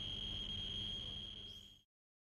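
Tracerco T201 contamination monitor's alarm sounding one steady high-pitched tone as a contaminated sample vial is held against its detector head, signalling radioactivity on the sample. The tone cuts off abruptly near the end.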